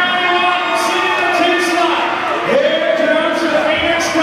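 An announcer's voice over an arena public-address system, calling the race, with crowd noise in a large hall.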